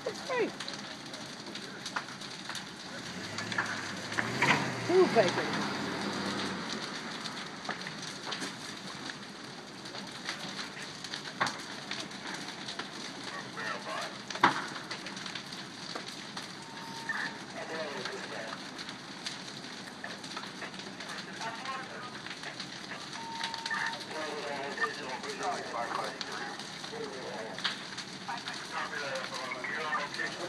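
Two wood-frame houses fully ablaze, burning with a steady rushing noise and scattered sharp cracks and pops from the burning timber.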